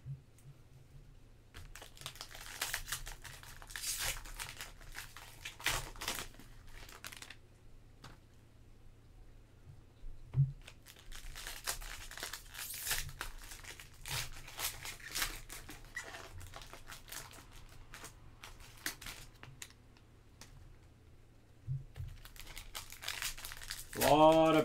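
Foil trading-card packs crinkling and tearing open by hand, in two long stretches of rustling with a few sharp clicks in between.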